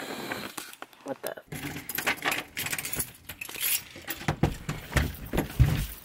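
Irregular clattering and jingling handling noise, made of many quick clicks and rattles, with brief voice sounds mixed in.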